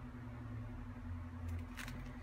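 Quiet room tone with a steady low hum, while stiff paper cards are handled and set down, giving a brief soft rustle near the end.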